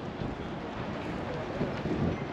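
Outdoor background noise: a steady low rumble of wind on the microphone, with faint distant voices.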